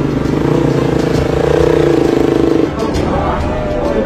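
Single-cylinder Kove 450 rally motorcycle engines running at low revs as the bikes roll in slowly. Their pulsing note drops away about two-thirds of the way through.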